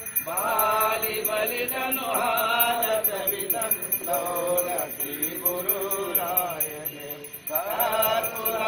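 Hindu priest chanting ritual puja mantras in a melodic recitation, phrase after phrase with brief pauses between them.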